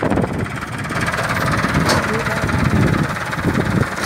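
Tractor diesel engine running steadily, heard at close range beside the open engine bay.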